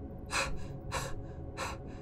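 A man's voice gasping for breath three times, short sharp breaths about two-thirds of a second apart, over a low steady hum.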